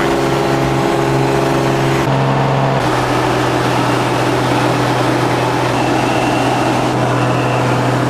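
A light propeller aircraft's engine droning steadily, heard inside the cabin. The tone holds one pitch throughout, and its character shifts about two to three seconds in.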